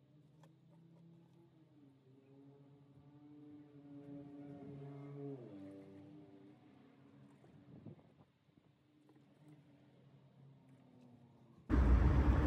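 Honda Type 2 coolant poured from a jug into a plastic coolant reservoir: a faint hollow tone that climbs in pitch as the tank fills, then drops away.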